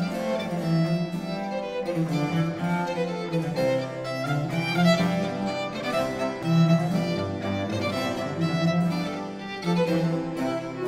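Baroque chamber ensemble of violin, cello, theorbo and harpsichord playing a seventeenth-century Venetian sonata: bowed violin and cello lines over a plucked continuo, in continuous, moving phrases.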